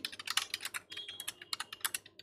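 Computer keyboard typing: a quick, even run of many keystroke clicks.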